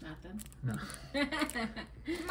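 Quiet speech in the second half, with light rustling of the thin plastic wrap around a trading card as it is handled.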